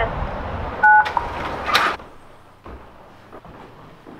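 A single dual-tone telephone keypad beep, about a third of a second long, through a telephone-entry call box's speaker over a steady hiss: the resident pressing a phone key to release the door lock. A short, harsh burst follows just under a second later.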